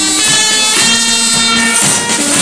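Carnival brass band playing: trumpets and other brass hold long, steady notes over a bass drum beat.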